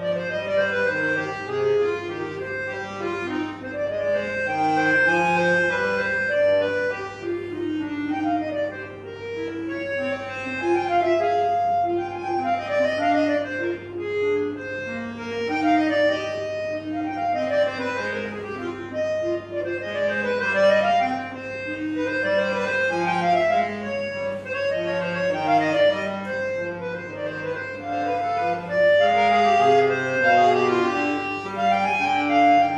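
Solo Pigini chromatic button accordion playing a fast classical piece: quick runs of notes that fall and rise over lower chords and bass notes, the loudness swelling and easing as the phrases go.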